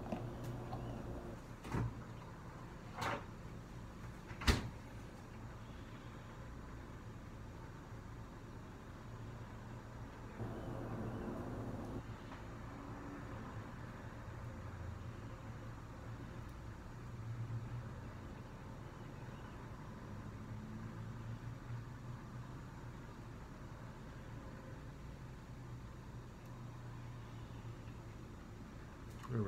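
Kitchen handling sounds: three sharp knocks or clicks in the first few seconds, then a steady low hum with faint rustling and clatter.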